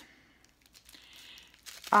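Faint crinkling of plastic packaging being handled, with a few soft clicks near the end.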